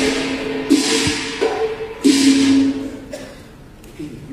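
Cantonese opera orchestra playing without singing: sustained melodic notes over percussion, with two loud crashing strikes a little over a second apart, dying away in the last second.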